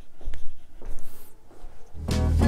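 Soft footsteps and clothing rustle in a small room as a man walks away.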